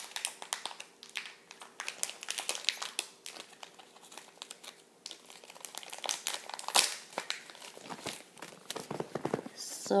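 Blind bag's packaging crinkling and rustling as it is opened and handled, a run of irregular crackles.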